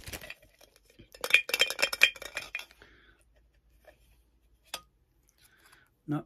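Tinny clinks and rattles as a Funko Soda collectible can is opened and handled. There is a quick cluster of sharp metallic clicks about a second in, and one more click near the end.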